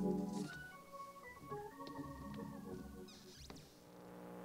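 Organ playing soft, sustained chords, dropping much quieter about half a second in, with a few faint clicks.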